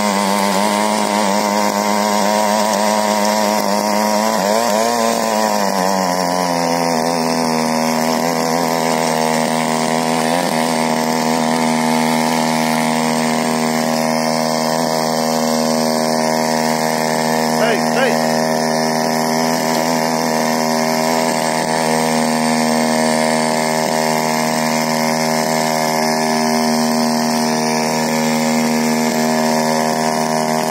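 68cc mini weeder's small petrol engine running hard as its rotary tines churn through dry soil. The engine note wavers at first, rises about five seconds in, then holds steady.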